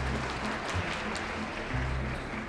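Live acoustic band accompaniment with low bass notes and guitar, and audience noise swelling over it in the middle.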